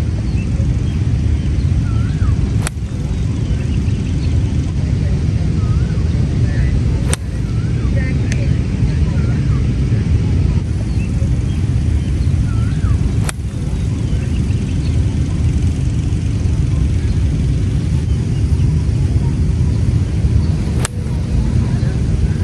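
Iron shots on a driving range: four sharp clicks of a golf club striking the ball, several seconds apart, over a steady low rumble of wind on the microphone, with birds chirping.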